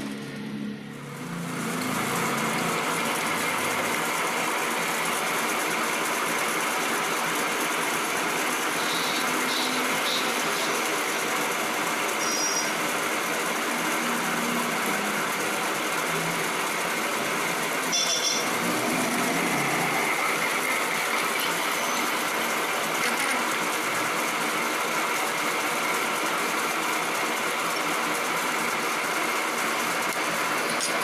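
Metal lathe running with an off-centre steel block spinning in its four-jaw chuck as it is bored, giving a steady dense machining noise. Brief high squeaks come and go, about ten seconds in and again near the middle.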